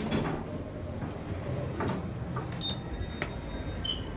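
Lift arriving and its sliding doors opening: a low rumble with a few clunks, and a thin high tone in the last second or so.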